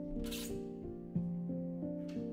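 Background instrumental music: soft, sustained notes that step from one to the next in a slow, gentle pattern. A brief swish sounds about a third of a second in.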